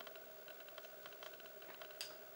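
Near silence: faint room tone with scattered faint small clicks.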